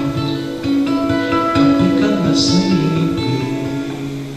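Acoustic guitar played live, with plucked notes and chords ringing on.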